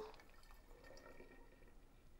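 Faint sound of a thick, creamy chocolate liqueur being poured from a blender jug into a bottle.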